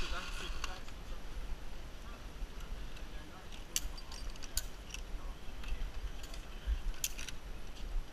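Wind rumbling on a helmet camera's microphone, with a few short sharp clicks scattered through the middle from zip-line harness gear being handled on the cable.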